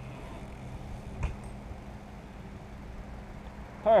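Steady low background hum with a single sharp knock about a second in, from a BMX bike hitting the concrete ramp.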